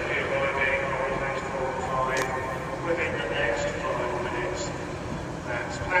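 Class 442 electric multiple unit pulling away from the platform, with a station public-address announcement over it and a sharp click about two seconds in.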